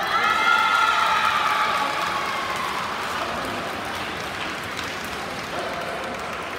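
Spectators in a sports hall applauding and cheering, with a few shouts over the clapping, loudest over the first two seconds or so and then dying down.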